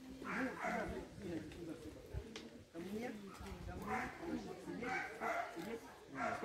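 A dog vocalizing, with people talking in the background.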